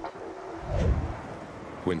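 Hurricane wind gusting against the microphone: a low rumble that swells and fades about a second in.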